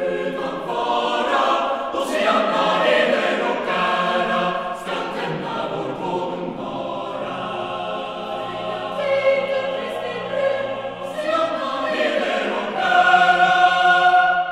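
Mixed youth choir singing a Christmas choral piece in Swedish, the voices swelling to a loud, sustained chord near the end.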